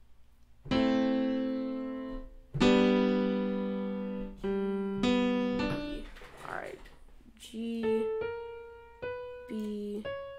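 Sampled grand piano in FL Studio (FLEX Grand Piano preset) sounding two full chords, about one and three seconds in, each ringing out and fading, then a series of single notes played one after another as notes are tried out to find a G chord.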